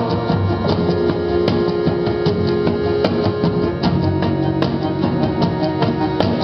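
Recorded song played back over a large pair of floor-standing hi-fi loudspeakers in a room: an instrumental passage with plucked guitar and drums, with regular drum strokes. A held sung note with vibrato ends just as it begins.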